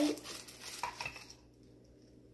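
Tissue paper rustling as a small stone is unwrapped from it by hand, with a couple of light knocks about a second in. The rustling stops about a second and a half in.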